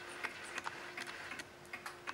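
Late-1920s Sessions Berkeley tambour mantel clock ticking, a faint, steady tick-tock.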